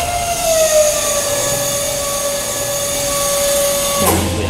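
A loud, sustained tone with overtones over a steady hiss, sagging slightly in pitch, that cuts off suddenly at the end: a sound-design drone laid over the transition.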